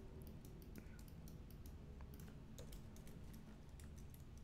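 Faint, irregular clicking of a computer keyboard and mouse as amounts are typed and selections are made.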